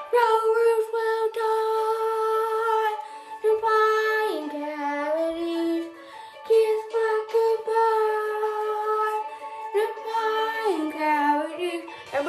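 A girl singing a wordless tune in long held notes with short breaths between phrases, the pitch dropping lower about four seconds in and again near the end, while she brushes her teeth.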